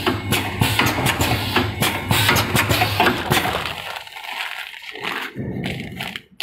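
Four-side-seal packaging machine running: a dense mechanical clatter of rapid knocks over a low hum. The clatter drops away about four seconds in, and near the end comes the crinkle of plastic snack bags being handled.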